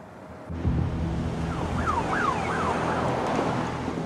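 A car's low, steady running and road noise, with a siren wailing up and down about three times around the middle.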